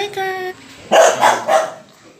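Four-week-old American Bully puppy barking twice in quick succession, about a second in.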